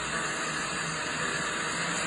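Steady hiss of background noise, even and unbroken, from a phone video being played back through the phone's small speaker.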